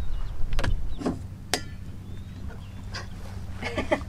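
A few sharp clicks and knocks from a truck camper's storage compartment being handled, over a low rumble at first; the sharpest knock comes about a second and a half in.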